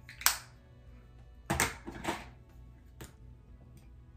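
A plastic makeup compact and its packaging being handled and opened: a handful of short, sharp plastic clicks and taps, the loudest about a quarter-second in.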